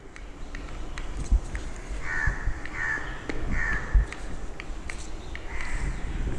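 Harsh bird calls, three in a row about three-quarters of a second apart starting about two seconds in, and a fourth near the end. A few soft knocks sound under them.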